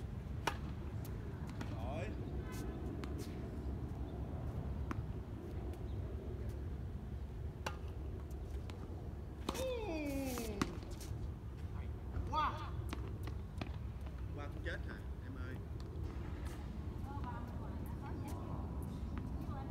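Tennis balls struck by rackets during a serve and rally, sharp single pops a second or more apart over a steady low rumble. Short vocal calls from the players break in, one with a falling pitch about halfway through.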